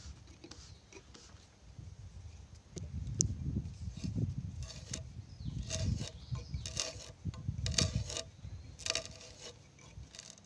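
Hand auger boring into a hewn timber beam: the spiral bit cuts and lifts wood chips with a low grinding rasp that grows louder about three seconds in. From about halfway, a short squeak or creak comes roughly once a second with each turn of the handle.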